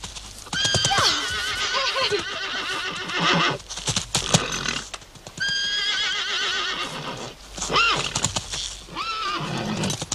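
A horse neighing in agitation: two long, quavering whinnies, the first about half a second in and the second about five seconds in, then shorter calls near the end. Hooves stamp in between.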